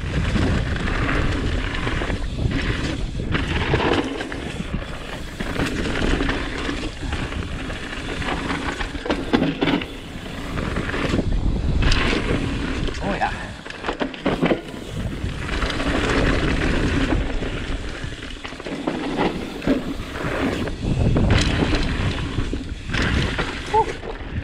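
Cannondale Jekyll mountain bike descending a loose dirt singletrack: steady rumble of tyres on dirt, with frequent sharp knocks and clatter from the bike hitting roots and bumps, the noise swelling and easing with speed.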